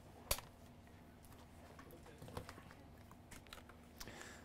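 Light clicks and taps from a handheld key programmer being picked up and handled on a workbench, with one sharper click just after the start and fainter clicks scattered after it.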